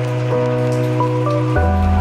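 Background music: soft sustained synth chords over a low bass note, the chord and bass shifting about one and a half seconds in.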